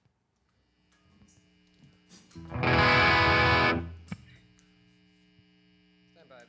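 Electric guitar through a distorted amplifier: one chord strummed about two and a half seconds in, held for just over a second, then cut off. A steady amplifier hum sits underneath, with a small click just after the chord stops.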